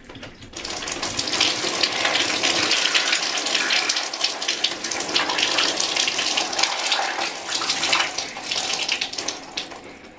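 Liquid poured from a large plastic bottle over a person's head, splashing steadily through hair and onto clothes; it starts about half a second in and eases off near the end.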